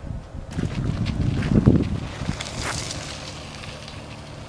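Wind buffeting the microphone: an uneven low rumble that swells about a second and a half in and eases toward the end.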